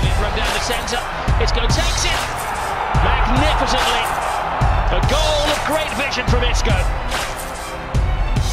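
Music with a deep bass hit about every one and a half to two seconds, laid over the noise of a stadium crowd.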